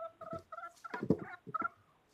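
Backyard chickens clucking: a run of short, soft calls, several a second.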